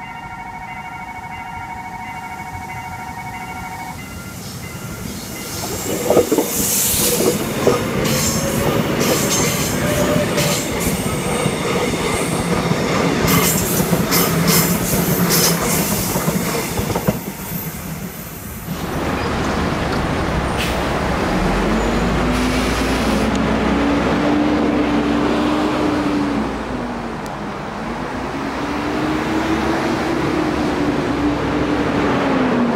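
A level-crossing warning signal sounds steadily for the first few seconds. Then an electric commuter train passes close by, with wheel squeal and clatter. After a cut about two-thirds of the way through, a city bus pulls away, its engine rising in pitch twice as it moves up through the gears.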